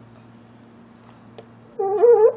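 A faint steady low hum, broken near the end by a short, high-pitched call whose pitch rises slightly, like a cat's meow.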